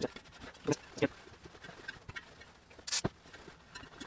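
Cloth rag rubbing along a spoked motorcycle rim, with faint scuffing and a few soft knocks. One sharper click comes about three seconds in.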